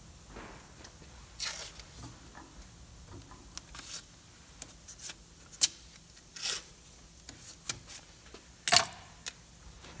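Blue masking tape being pulled off its roll, torn and pressed onto a plastic-wrapped tire, with the plastic film crinkling under the hands. A scatter of short rips and crackles, the loudest near the end.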